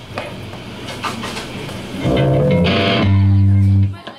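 Live band's electric guitar and bass through amplifiers: low-level noise and small clicks at first, then about two seconds in a loud chord comes in and is held before cutting off just before the end.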